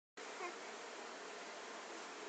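Steady low background hiss, with one brief, short baby vocal sound about half a second in.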